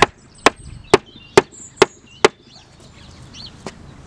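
Large hammer striking a wooden block set on top of a pallet-wood border board, driving the board down into the soil: six hard knocks a little under half a second apart, then they stop.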